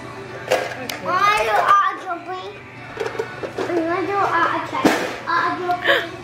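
A small child's wordless, high-pitched vocal sounds, rising and falling in pitch, over background music, with a few sharp taps.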